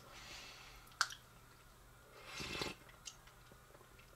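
A person sipping coffee from a small cup, a soft slurp about two seconds in, preceded by a single sharp click about a second in.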